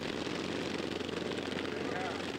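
A pack of governed GP-class racing lawn mower engines running together at a steady drone as the mowers circle the dirt track. The governor holds each engine to 3,650 RPM.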